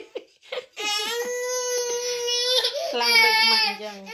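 A baby crying in two long, steady-pitched wails: the first held for nearly two seconds, the second, briefer, after a short break.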